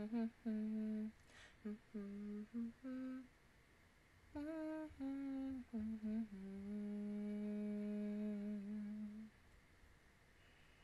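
A woman humming a tune with her mouth closed: a string of short notes, then one long held note that stops about nine seconds in.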